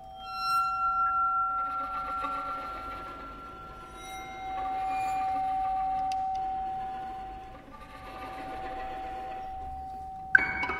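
Contemporary chamber music: bowed violins and viola holding long, steady high tones that swell and fade, with a brief bright ringing tone about half a second in.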